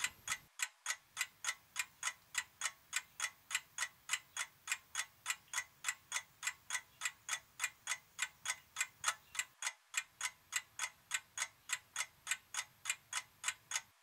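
Stopwatch ticking sound effect: an even, quick tick at about three to four ticks a second, marking time passing during the hour-long electrolysis time-lapse, with two brief breaks in the ticking.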